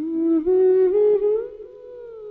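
A woman humming a wordless melody in a film song: it starts suddenly, steps up note by note over about a second and a half, then holds a softer long note.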